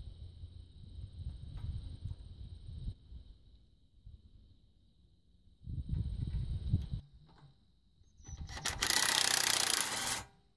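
Rubber hydraulic hoses being handled and rubbing against the loader frame. Near the end a cordless drill runs for about two seconds, fastening the hose-clamp bracket to the loader upright.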